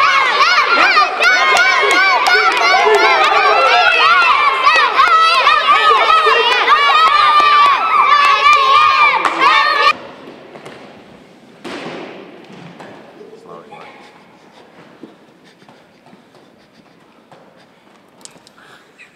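A group of children cheering and shouting excitedly, many voices at once. It cuts off abruptly about ten seconds in, leaving quiet room sound with one brief rush of noise shortly after.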